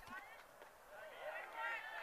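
Faint voices of the crowd and players in the background, with a high-pitched voice calling out from about a second in.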